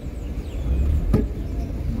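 Car engine and road rumble heard inside the cabin, a low steady drone that grows louder as the car pulls away, with a single sharp click about a second in.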